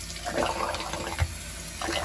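Bathroom faucet running steadily into a sink, with water splashed by hand onto a water-repellent fabric sleeve over an air intake filter.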